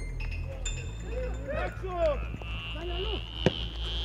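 Distant shouts and calls of footballers and coaches across a training pitch, with one sharp thud of a ball being struck about three and a half seconds in, over a steady low rumble.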